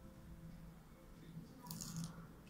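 Backing liner being peeled off the adhesive side of a thin metal phone-mount plate: a brief faint rustle near the end, over a low steady hum.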